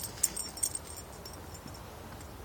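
A dog digging and rooting in a mulch bed after a vole: a few short scratches and rustles of mulch in the first second, then quieter.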